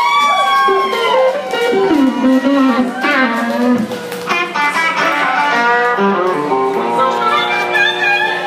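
Live electric blues band playing a shuffle, led by electric guitar, with lead notes that slide up and down in pitch.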